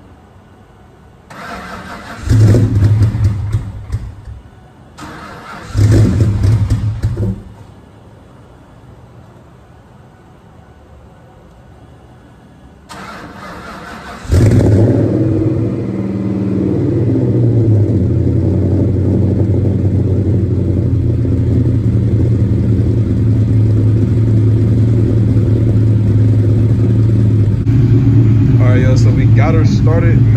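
Ford SVT Cobra Mustang's 4.6 V8 being started after about two months sitting: it cranks and briefly fires twice, dying away each time, then catches about fourteen seconds in and settles into a steady idle.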